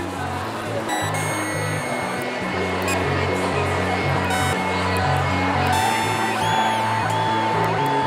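littleBits Synth Kit analog modules, modeled on the Korg MS-20, playing buzzy electronic tones: a low note that changes pitch in steps under higher held tones, with a tone that sweeps sharply up and back down near the end as the knobs are turned.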